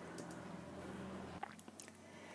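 Faint room tone with a low steady hum that cuts off about a second and a half in, followed by a few faint clicks.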